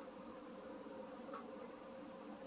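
Faint, steady background buzz and hiss with a thin high tone in a pause between words.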